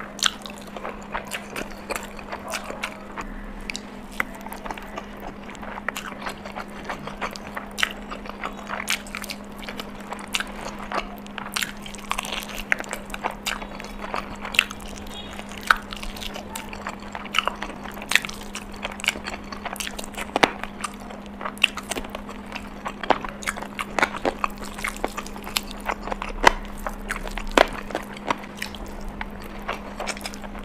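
Close-miked eating of spicy chicken curry and rice by hand: biting and chewing with many sharp mouth clicks and smacks, and a low steady hum underneath.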